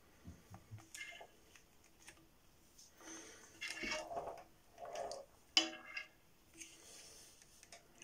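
Handling noise: a leather belt and leather ferro rod holders being moved about and slid across a stone board, with soft rubbing and a few light knocks, the sharpest a little past halfway.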